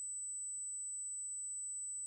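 Steady high-pitched electronic whine with a faint low hum beneath it, no speech: static on the stream's audio line.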